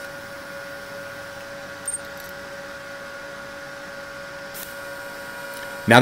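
TIG welding arc running steadily during tack welding, a constant buzz with a light hiss, and a brief high chirp about two seconds in.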